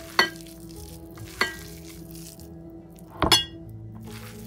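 A hand mashing and mixing food in a glass bowl, knocking the bowl three times: short ringing clinks, the last one near the end the loudest.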